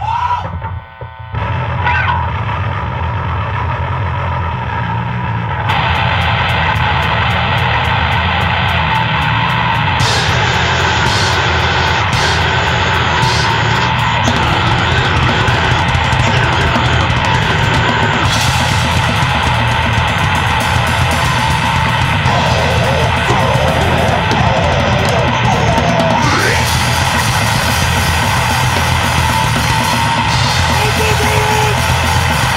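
Grindcore band playing a fast, heavy song: distorted guitars, bass and drums. It kicks in after a short break about a second and a half in, and cymbals fill out the sound from about six seconds.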